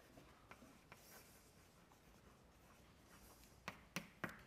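Chalk writing on a blackboard: faint scratching strokes with a few light taps of the chalk, the sharpest two near the end.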